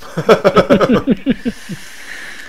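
A man laughing in quick bursts, then a soft steady hiss near the end as he draws on an electronic cigarette (vape).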